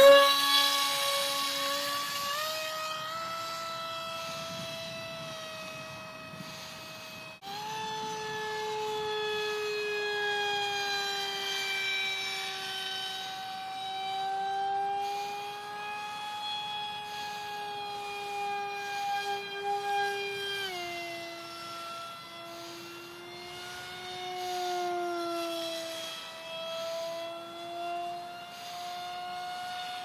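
Electric motor and 6x4 propeller of an RC foam Eurofighter jet (Grayson Super Megajet v2 brushless motor on a 4S battery) running under power in flight, a high steady whine loudest right at the start and then heard from farther off. The pitch wanders as the jet passes and the throttle changes, with a short break about seven seconds in and a clear drop in pitch about 21 seconds in.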